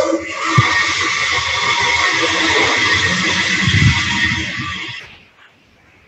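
A loud rushing noise that cuts in suddenly and fades away after about five seconds.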